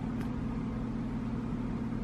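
A steady low hum with no other distinct sound.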